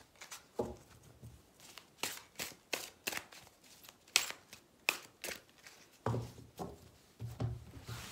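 A tarot deck being shuffled by hand: an irregular string of short card flicks and taps, with a few heavier taps near the end.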